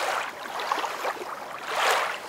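Water splashing and sloshing as a dog swims, coming in uneven swells with a louder splash near the end.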